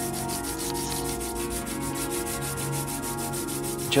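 Graphite point of a wooden pencil rubbed back and forth on a sandpaper pad, a steady scratching of repeated sanding strokes, over steady held tones.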